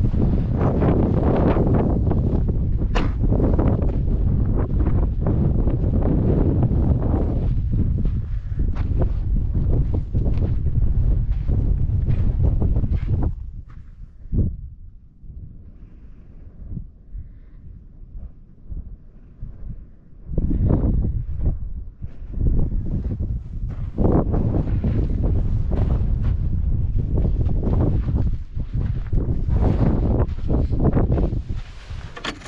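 Wind buffeting the microphone in a loud, low rumble. It eases off for several seconds in the middle, then gusts again.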